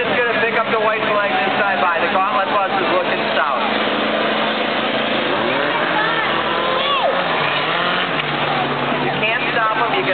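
Engines of racing cars running around the track, a steady drone under a loud wash of noise, mixed with spectators' voices shouting and chattering close by.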